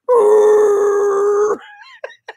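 A man's voice imitating a car's tyres screeching in a burnout: one loud, high, steady 'eeee' held for about a second and a half, then cut off.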